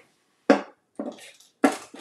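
Three sharp clacks of hard objects knocking together as craft supplies are rummaged through, one about half a second in, a fainter one at about a second, and another just past a second and a half.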